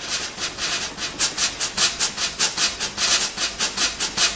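Cartoon sound effect: a fast, even, scratchy shaking rhythm of about six strokes a second, like a shaker.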